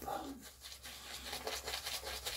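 Shaving brush swirling shave-soap lather over the cheeks and beard, heard as a faint, quick, scratchy swishing.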